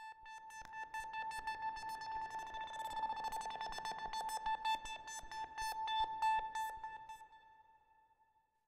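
Synthesizer layer from a Prophet analogue synth, played back on its own: one sustained high note under a fast, oddly rhythmic pulse of clicky strokes, added to keep interest through a single held chord. It fades away near the end.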